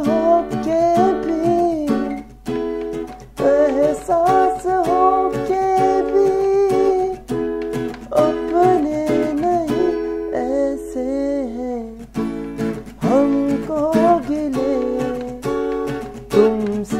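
Acoustic guitar strummed in a steady chord pattern while a man sings the melody over it. The singing drops out briefly about ten seconds in, leaving the guitar alone.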